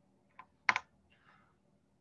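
Computer keyboard keys being pressed: a faint tick, then a sharper double click about three-quarters of a second in.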